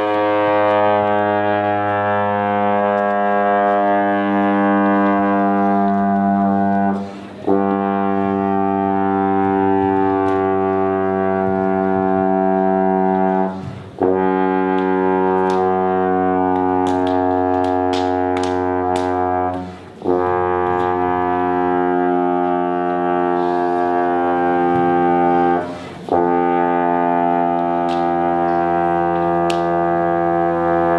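Trombone holding long, steady sustained notes, each about six seconds long, with a short break between one note and the next.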